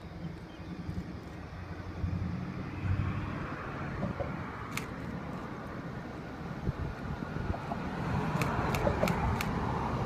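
Diesel locomotives hauling an intermodal freight train as it approaches: a low engine drone that grows louder toward the end. A few sharp clicks sound about halfway through and near the end.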